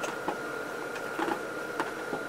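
Cloth rag being rubbed across a glossy painted car panel to wipe off brake fluid, with a few light knocks. A faint steady high-pitched whine runs underneath.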